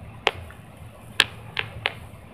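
Four short, sharp clicks, unevenly spaced, the loudest about a second in.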